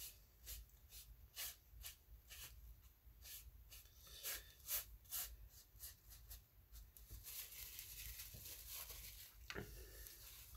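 Faint swiping strokes of a painting tool across damp watercolour paper, about two a second, then a steadier continuous rub over the last few seconds.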